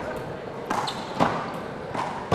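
Small rubber handball being hit by hand and rebounding off the wall and hardwood floor during a one-wall rally: three sharp smacks less than a second apart, echoing in a large sports hall.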